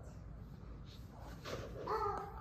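A child's voice making a short, high, squeaky animal-like sound near the end, over a low steady room hum.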